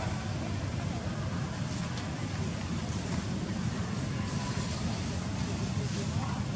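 Steady low rumble of background noise with a faint hiss above it, without any distinct animal calls.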